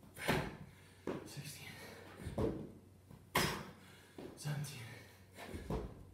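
A person doing burpees on a rubber floor mat: repeated thuds of hands and feet landing as he drops to a plank and jumps back up, with hard breathing between them, about two reps' worth.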